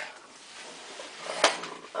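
Plastic LEGO bricks being handled, with one sharp click about three quarters of the way through against low room noise.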